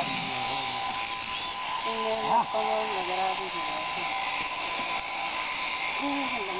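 Electric sheep-shearing clippers running with a steady high hum.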